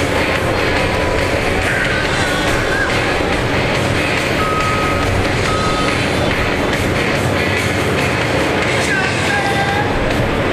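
Steady din of truck and skid-steer loader engines running in the arena, with music playing over it. Two short beeps come about halfway through, like a reversing alarm.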